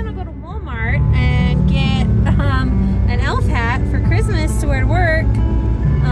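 A voice over music, with a low steady car rumble heard inside the cabin.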